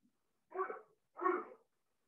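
Two short voice-like sounds, about half a second apart.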